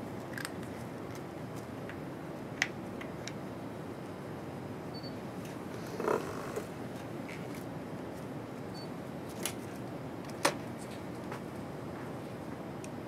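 Steady room hiss broken by a few small, sharp clicks and one duller knock about six seconds in, from small plastic lab items being handled: sample tubes taken from and set into a plastic rack, and a micropipette.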